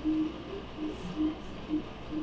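Faint murmur of background voices in a room, in short low snatches, over a steady low hum.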